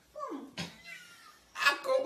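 A short, meow-like cry that slides down in pitch early on, followed near the end by voices starting up again.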